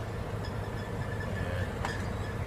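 Semi-truck's diesel engine idling, a steady low rumble heard from inside the cab.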